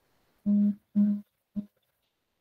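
A person humming three short notes at the same low, steady pitch, the last one shortest.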